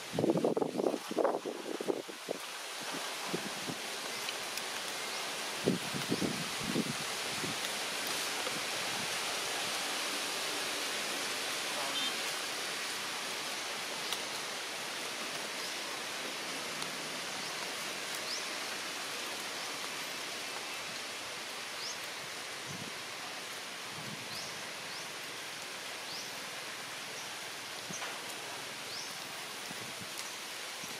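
Steady outdoor background hiss, with a few brief louder sounds in the first two seconds and again around six seconds in, and short, faint high chirps scattered through.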